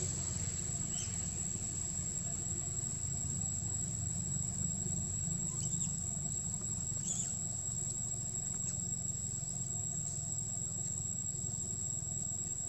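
Steady high-pitched insect drone over a low, even rumble, with a few faint short chirps about a second in and again around six and seven seconds.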